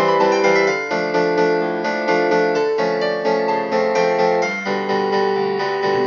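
Instrumental piano music playing a melody, with notes following each other in quick succession.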